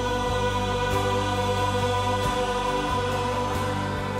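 Gospel worship song sung by a female soloist with a full choir and orchestra, the voices and instruments holding long sustained notes over a steady bass.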